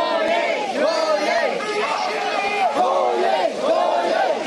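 A crowd of marchers shouting protest slogans together, many voices rising and falling in unison.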